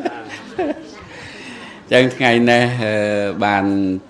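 A man's voice preaching a Buddhist sermon: quieter for the first two seconds, then loud, drawn-out, sing-song delivery with long held pitches from about two seconds in.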